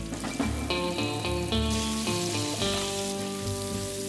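Ground meat sizzling as it fries in a frying pan and is stirred, under background music with sustained notes.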